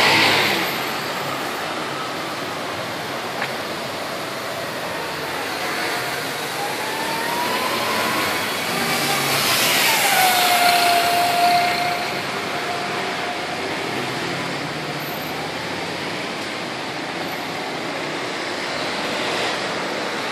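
Busy city street traffic: cars and motor scooters passing steadily. Near the middle a city bus passes close and is the loudest part, with a whine that drops in pitch and holds for a couple of seconds.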